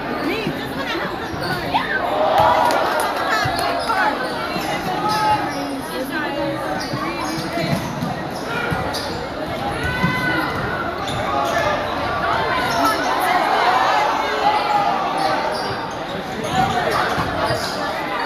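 Basketball bouncing on a hardwood gym floor during play, a scatter of sharp knocks echoing around a large gym, over the chatter and voices of the crowd.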